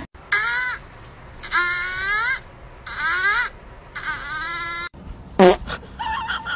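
Kitten meowing four times, each meow bending up and down in pitch, then a short, louder cry near the end.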